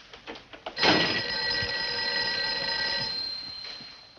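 Telephone bell ringing: one long ring that starts suddenly about a second in and fades out near the end. Faint newspaper rustling comes just before it.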